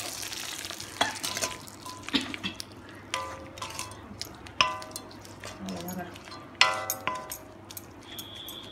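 A wooden spoon stirring and scraping frying greens with dried red chillies in a metal kadai, over a light sizzle that is strongest at first and then fades. Several strokes knock the pan, and it rings briefly each time, loudest about two-thirds of the way in.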